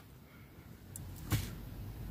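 Quiet car-cabin background with a faint low hum, broken by a single short click about a second and a third in.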